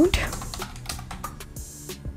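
Computer keyboard typing: a quick run of separate keystrokes over quiet background music.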